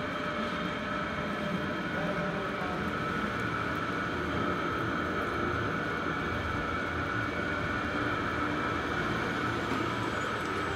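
A potter's wheel motor running steadily with a constant hum and a high whine over it, as a tall clay jar is thrown on the spinning wheel.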